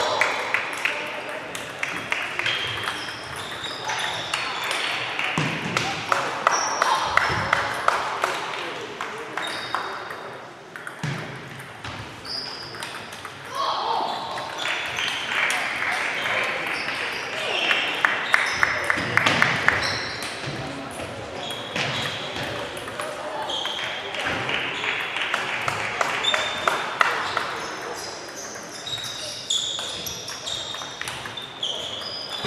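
Table tennis balls clicking off bats and tables at several matches at once, an irregular, overlapping patter of sharp ticks that echoes in a large hall. Voices and chatter run underneath.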